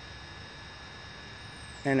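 Steady low hum with faint hiss and two thin, steady high tones underneath; a man starts speaking near the end.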